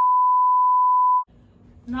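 Censor bleep: one steady, pure beep tone that cuts off abruptly a little over a second in, edited over a spoken name.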